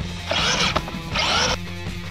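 Two short raspy bursts from a Traxxas Maxx RC monster truck's electric motor and drivetrain as it is throttled on concrete, each pulse rising and falling in pitch, over background music.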